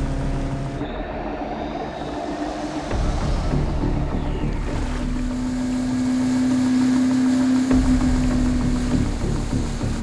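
Dramatic film score with a long held low note, mixed over the outboard motors of inflatable Zodiac boats running fast across the water.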